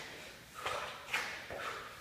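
Hard breathing with short sharp exhales from an exerting man, mixed with his sneakers stepping on a rubber floor mat during Spiderman-climb reps; three short bursts come about half a second apart.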